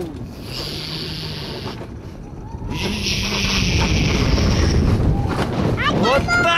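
Alpine coaster sled running downhill on its steel rails: a steady rumble and rattle of the wheels with hiss and wind on the microphone, growing louder about halfway through.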